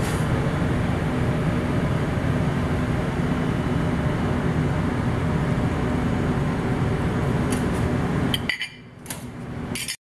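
Steady low hum and hiss of kitchen room noise, with a few light clicks near the end as the noise drops away.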